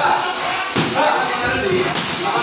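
A strike landing on a hand-held striking pad in Muay Thai pad work: one sharp slap about three-quarters of a second in.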